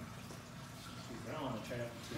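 Quiet background room noise in a lull between talk, with a faint voice speaking briefly in the second half.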